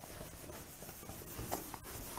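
Duster wiping marker writing off a whiteboard in faint, short rubbing strokes, one louder stroke about one and a half seconds in.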